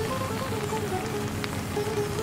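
Slow Indian instrumental music, a single melody of held notes that step gently up and down over steady low notes, mixed with the even hiss of falling rain.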